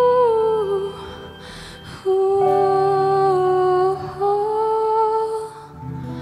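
A woman's voice singing long, held wordless notes that step between a few pitches, over a soft sustained keyboard chord. A breath is taken between phrases.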